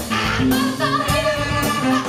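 Live soul band with horns, keyboards, electric guitar, bass and drums playing, with women singing. A long high note is held through the second half.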